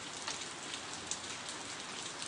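A faint, steady hiss like light rain, with no separate strokes or events.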